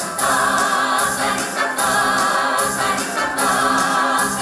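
A Russian folk-song ensemble singing in chorus, several voices held together in harmony with music behind them.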